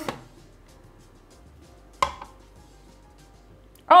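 A ceramic cup set down on a glass kitchen scale: one sharp knock about two seconds in, followed by a few light ticks.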